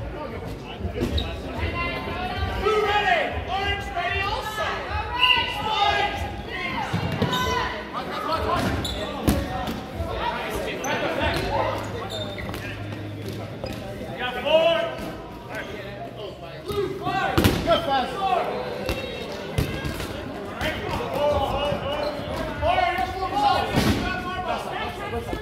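8.5-inch rubber dodgeballs thrown, striking and bouncing on a hardwood gym floor, several sharp smacks ringing in a large echoing hall, over players' overlapping shouts and calls.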